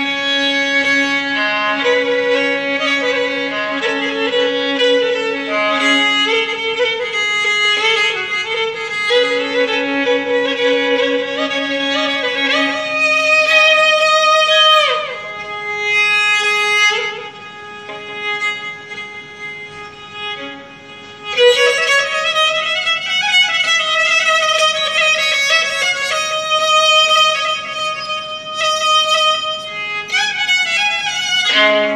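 Solo violin improvising in the Persian mode Dashti. A held lower note sounds beneath the melody for the first dozen seconds, the pitch slides down about halfway through, and after a quieter stretch the playing grows louder again with a rising slide.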